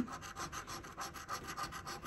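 A large metal coin scratching the scratch-off coating from a lottery ticket in quick, even strokes, several a second.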